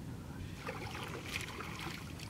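A wet nylon fishing net being hauled over the side of a wooden boat, with water splashing and dripping from the mesh and light crackling rustle of handling, over a low wind rumble.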